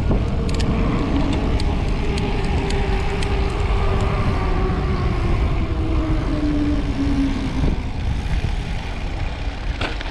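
Wind rushing over the microphone and tyre noise from a mountain bike rolling fast down an asphalt road, with a faint hum that falls slowly in pitch over several seconds as the bike slows.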